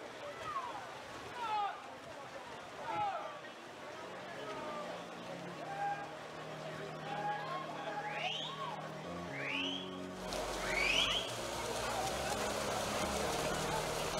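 Swim-meet poolside sound: low background music, with scattered short high calls that swoop in pitch. About ten seconds in, a louder wash of pool and crowd noise comes up.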